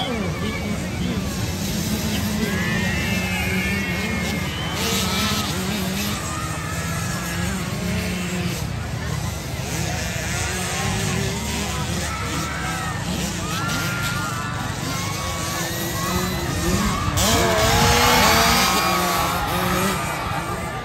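Small 50cc and 65cc motocross bikes running on a dirt track, a steady engine drone, under the talk and shouts of a large crowd of spectators. The crowd noise swells loudest near the end.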